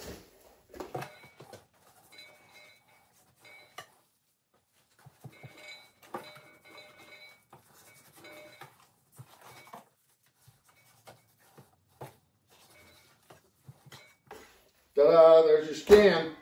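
Faint, scattered scrapes and light knocks of a knife slicing the skin off a raw pork belly on a wooden butcher block.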